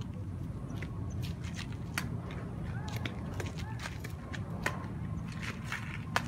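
Badminton rackets striking a shuttlecock in a rally: sharp separate taps about a second apart, over a steady low rumble and faint distant voices.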